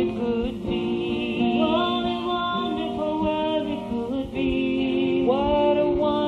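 Voices singing a slow song over instrumental backing, holding notes and sliding between pitches.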